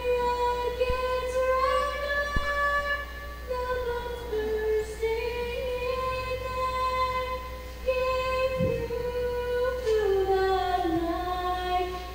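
A teenage girl singing the national anthem solo and unaccompanied, holding long, steady notes that step up and down in pitch.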